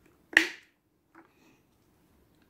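A single sharp plastic click about a third of a second in, then a faint tick a second later: the rear filter cover of a Tilswall 550 W HVLP electric paint sprayer snapping into place on the motor housing.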